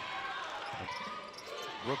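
Game sound in a basketball arena: a steady crowd hum with a few faint thuds of the basketball on the hardwood court.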